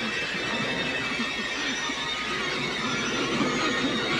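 A boy wailing in short, wavering cries over steady heavy rain.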